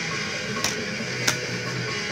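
Death metal music in the background, with two sharp clicks about two-thirds of a second apart from a plastic CD jewel case being handled.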